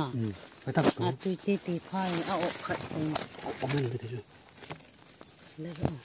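A person talking in short, broken phrases, with a quieter pause a little after the middle.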